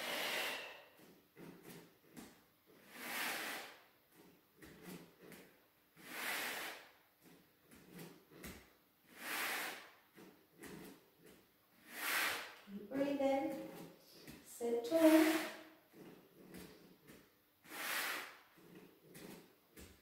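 A woman exhaling hard in a steady rhythm, one breathy rush about every three seconds, paced to the repetitions of a seated leg exercise.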